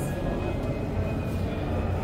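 Steady low background rumble with a constant hum, even in level throughout.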